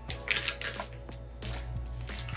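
Soft background music, with rustling and crinkling in the first second as a plastic packet of wipes is pushed into a small packed bag.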